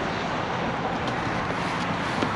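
Steady outdoor noise of wind on the microphone mixed with passing road traffic, an even rush with no distinct events.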